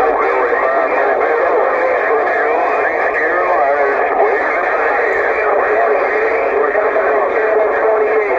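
Cobra 148 CB radio's speaker receiving several distant stations at once on channel 28: thin, narrow-band voices talking over one another in a steady jumble, with no single voice standing out.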